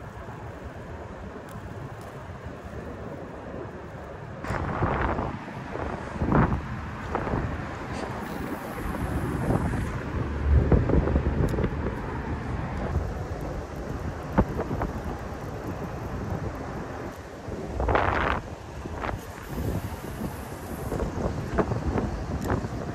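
Wind buffeting the microphone, a steady rumbling rush, with a few brief louder surges, the strongest about eighteen seconds in.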